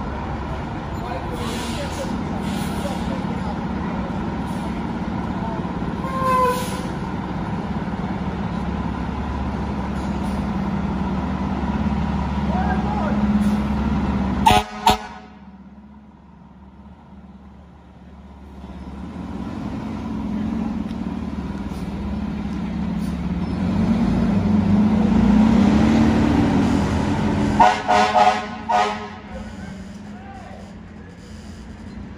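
2021 Seagrave fire engine's diesel engine running steadily, then building up as the truck pulls out on a response. Its air horn gives short blasts about halfway through, and a quick series of blasts near the end.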